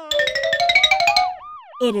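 Cartoon transition sound effect: a quick run of bright notes stepping upward, then a wobbling tone that slides up and down like a boing about a second in.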